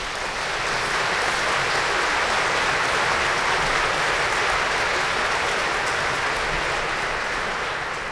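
Theatre audience applauding: a dense, steady mass of clapping that swells up over the first second and eases slightly near the end.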